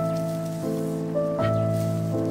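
Background music of held keyboard chords, the notes changing a few times.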